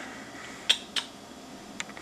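Two short clicks about a third of a second apart, with a fainter one near the end, over faint room hiss.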